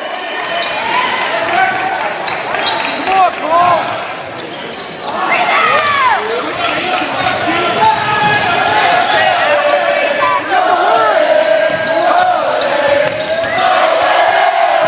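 Spectators shouting and cheering in an echoing school gymnasium, with a basketball bouncing on the hardwood floor. The crowd noise grows louder about five seconds in.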